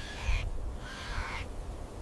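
Ostrich calling: two hoarse, breathy calls, the second about a second in, over a steady low rumble.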